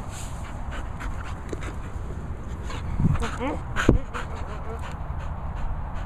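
A dog panting close to the microphone, in quick repeated breaths, with louder moments about halfway through.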